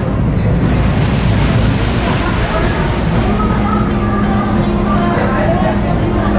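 A ferryboat under way: a steady low rumble and rush from its engine and the water washing past the hull, with wind on the microphone. A faint steady tone joins the rumble about halfway through.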